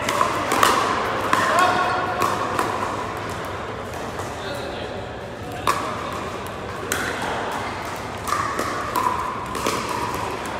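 Pickleball paddles striking plastic balls: irregular sharp pops, several seconds apart at times, echoing around a large indoor hall of courts over a murmur of voices.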